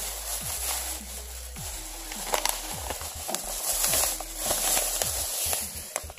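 White packing wrap rustling and crinkling as it is pulled apart by hand, in an uneven run of crackles.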